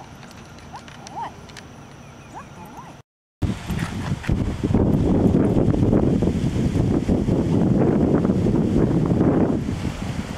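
Faint high chirps over a quiet outdoor background, then, after a cut about three seconds in, loud rough noise with many small clicks.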